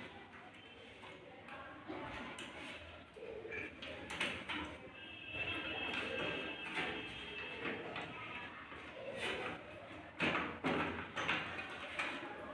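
Scattered clicks, taps and knocks of plastic and metal inside a desktop computer case as the four push-pin fasteners of the CPU heatsink fan are twisted and the cooler is worked loose, with sharper knocks a little after ten seconds.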